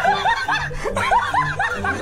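High-pitched snickering laughter in quick 'ha' pulses, about five a second, over background music.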